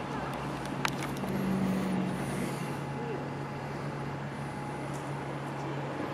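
Steady low engine hum over outdoor background noise, swelling a little between about one and two and a half seconds in, with a single sharp click about a second in.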